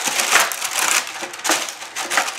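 Parchment paper crinkling and crackling as it is pressed and smoothed into a thin disposable aluminium foil baking pan, in several uneven rustling surges.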